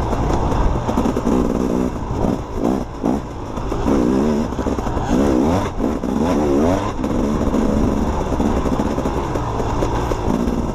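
Dirt bike engine running hard under the rider, its pitch wavering quickly up and down as the throttle is worked over the rough trail, with revs swelling and easing every second or so.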